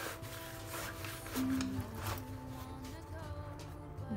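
Soft background music of long held notes, with faint rustling as a fabric backpack is handled.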